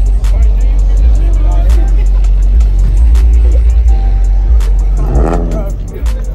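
A car engine running loudly close by: a deep, low rumble that swells and dips for the first few seconds and eases off near the end, with music playing underneath.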